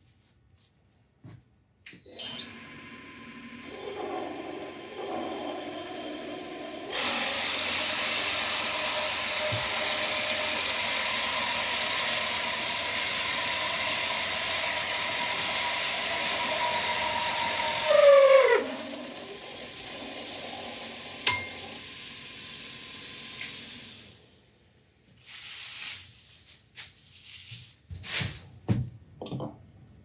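Milling machine spindle driving a 4-inch Forstner bit at about 1300 RPM, boring into a Richlite block: the spindle spins up, the cut grinds loudly for about ten seconds, ends in a squeal that slides down in pitch, and the spindle runs on more quietly until it stops about 24 seconds in. Scattered clatter of chips and handling follows near the end.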